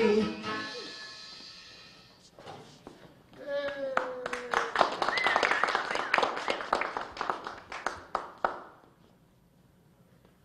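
The last sung note and backing music of a square dance singing call fade out, then the dancers clap and call out for several seconds before it falls quiet.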